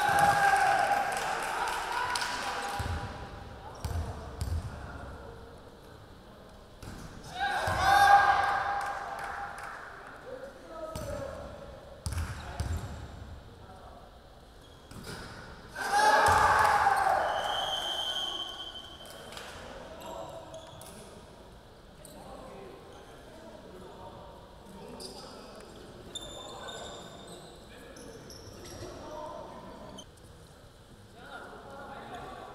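A basketball bouncing on a hardwood gym floor in an echoing hall, a few slow bounces at a time as free throws are lined up. Three bursts of shouting voices come about eight seconds apart.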